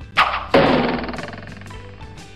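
Background music with a sound-effect hit for the title card: two sudden strikes about a third of a second apart, the second one louder and noisier, fading out over about a second.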